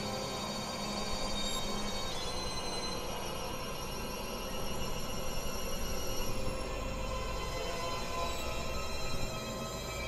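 Experimental synthesizer drone music: many steady held tones layered over a noisy low rumble. The high tones shift about two seconds in, and the low end swells through the middle.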